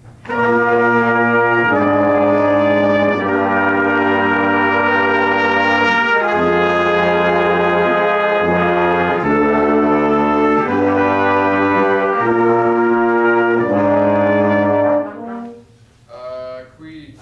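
Small brass ensemble with trombone playing slow, sustained chords in several parts, the chord changing every second or two. The chords cut off shortly before the end.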